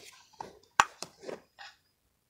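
Handling noises of small plastic boxes and toy props: a few light knocks and clicks, with one sharp click a little under a second in.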